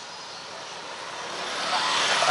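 A motorcycle approaching along the road, its engine and tyre noise growing steadily louder.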